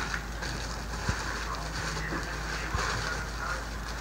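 Clear plastic bag crinkling and rustling as the wrapped mask inside it is handled, with a few faint clicks.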